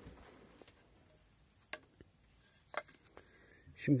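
A handful of scattered, short wooden knocks and taps from a wooden weaving sword working the warp of a narrow hand-woven band (kolan), otherwise quiet; a voice begins right at the end.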